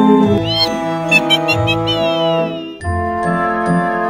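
Background music with held chords. In the middle comes a run of high gliding notes: a rise, a few short repeated notes, then a long falling slide.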